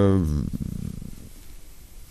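A man's voice holding a drawn-out hesitation sound on one pitch. It trails off about half a second in into a low, rough, creaky murmur that fades away.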